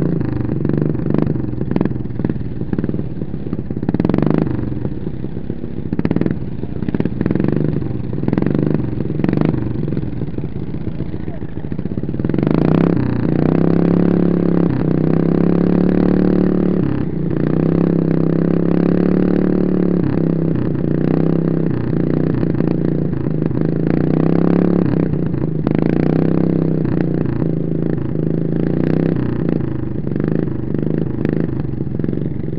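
Derby riding lawn mower engine running close up through a short vertical exhaust pipe as the mower drives over rough dirt, with knocks and rattles in the first twelve seconds. From about twelve seconds in the engine holds a steadier, higher note.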